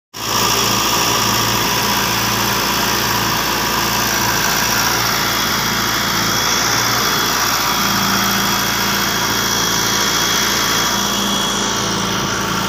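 John Deere 595D excavator's diesel engine running steadily while the boom and arm move.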